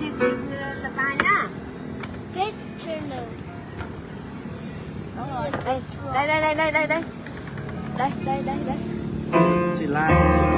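People's voices talking off and on. About nine seconds in, a Bowman CX350 digital piano starts playing held chords.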